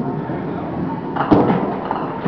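Bowling alley noise with a sharp crash of pins about a second and a quarter in.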